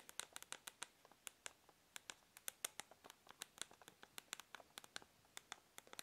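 Soft rubber keys of a VicTsing handheld mini wireless keyboard being pressed one after another by thumbs: a quick, irregular run of faint clicks, several a second.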